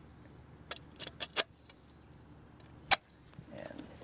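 Aluminium tube leg frame of a camping cot being unfolded and handled: three sharp metallic clicks in the first second and a half, then a single louder click near three seconds.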